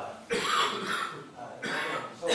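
A person coughing, two loud coughing bouts, the first starting about a third of a second in and the second near the end.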